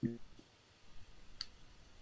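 A single short click about one and a half seconds in, over faint room hiss on a microphone line.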